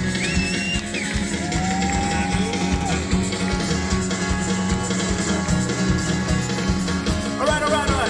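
Live band music: a man singing over an acoustic guitar and drums, with a long held note about two seconds in.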